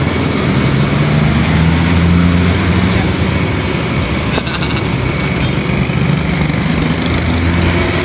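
Steady low engine hum of an idling vehicle, with a motorcycle passing on the road about four seconds in.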